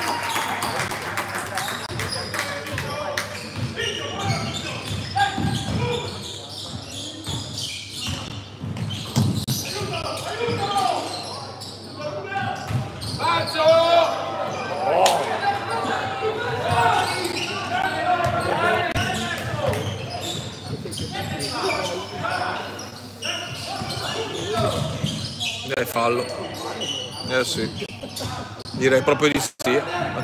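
Basketball bouncing on a hardwood gym floor during live play, with repeated short thuds, and players' and coaches' indistinct shouting. All of it rings with the echo of a large sports hall.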